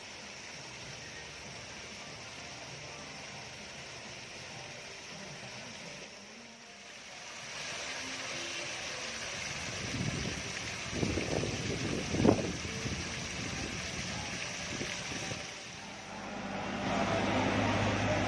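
Many thin water jets of a decorative fountain spraying and splashing into its pool, a steady hiss that grows louder about seven seconds in. A few low rumbles come midway.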